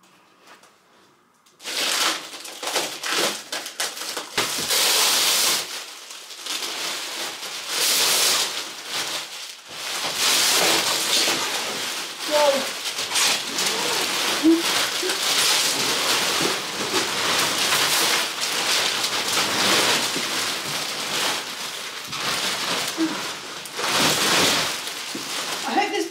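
Plastic wrapping rustling and crinkling loudly in irregular bursts as it is pulled off a roll-packed mattress, starting about two seconds in.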